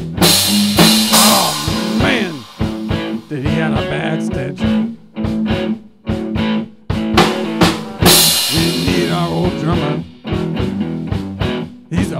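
Instrumental break of an amateur rock song: guitar over a drum kit, with cymbal crashes at the start and again about eight seconds in.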